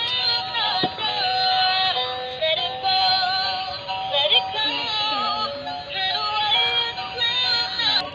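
Dancing fairy toy playing its built-in electronic tune with synthesized singing, a tinny stepping melody from a small speaker.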